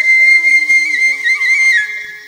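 Background music led by a flute, holding a high note with small ornamental trills and fading near the end.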